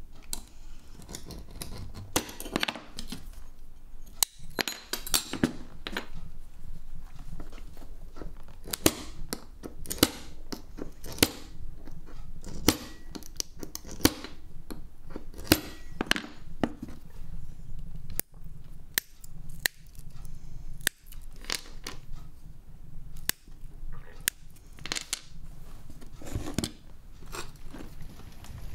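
Hand-held glass cutter scoring and snapping small strips of mosaic glass: a string of sharp clicks and snaps at irregular intervals, over a low steady background hum.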